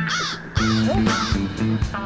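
A crow cawing, about three harsh caws in quick succession in the first second, over background music with steady low notes.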